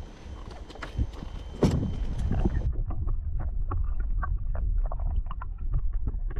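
About a second and a half of knocks and handling on a small boat, with a sharp knock in the middle. Then the sound turns muffled and underwater, heard through an action camera submerged in the lake: a low rumble with many small clicks and ticks, the high end gone.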